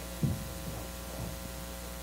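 Steady electrical hum, a stack of even tones that holds level throughout, with one brief low thump about a quarter second in.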